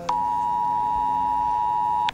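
A smartphone sounding an emergency cell-broadcast alert (RO-ALERT): the steady two-tone attention signal that marks an incoming public warning message.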